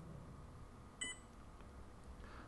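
One short electronic beep, about a second in, from a handheld barcode scanner confirming that it has read a bin-location barcode.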